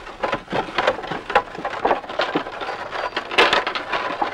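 Dense, irregular clicking and crackling of wooden poles and sticks being handled.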